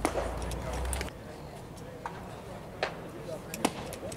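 A single sharp crack of a baseball struck or caught at home plate as the batter swings at a pitch, followed by scattered voices and a couple of short, fainter clicks.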